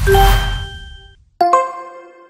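Audio logo sting for a channel intro animation: a swelling whoosh with a deep hit and a ringing tone that dies away after about a second, then a bright, bell-like chime about a second and a half in that rings out.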